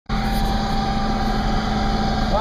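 Loud, steady engine and road noise inside a moving car's cabin, with a thin, steady whine running through it.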